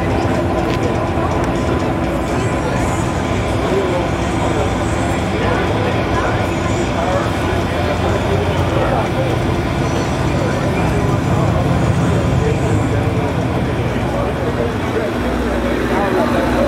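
Indistinct voices of many people talking over a steady mechanical hum. The level stays even throughout, with no engine firing or sudden event.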